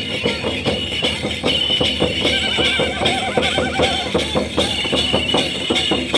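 Santhal folk dance music: drums beating a fast, steady rhythm of about four beats a second, with a high wavering note over it for about a second in the middle.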